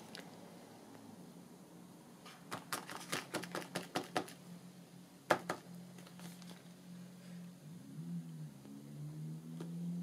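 Quick run of light taps as a small swallow stamp is dabbed on a black ink pad, then a single sharper tap about five seconds in as it is pressed onto the paper.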